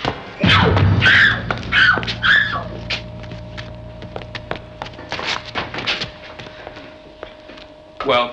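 A scuffle of knocks and thuds as a man wrestles with a child, under a loud burst of dramatic music with a low held note in the first few seconds. A steady tone then holds to the end.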